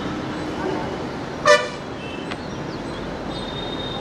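A single short, loud vehicle horn toot about a second and a half in, over a steady rushing background noise.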